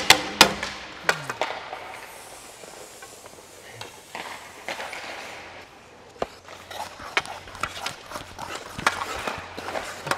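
Hockey practice sounds on ice: sharp knocks of pucks and sticks in the first second or so, then scattered light clicks of a stick blade tapping pucks and skates scraping the ice, over a low steady hum.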